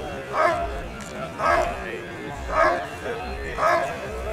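German Shepherd Dog barking at a helper in the blind, one loud bark about every second, four in all. This is the hold-and-bark of IPO protection work.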